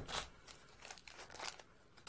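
Faint handling noises: a few soft clicks and rustles.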